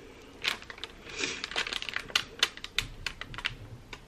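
Plastic squeeze bottle of Wilton cookie icing being handled and squeezed: a run of quick, irregular light clicks and taps lasting a few seconds.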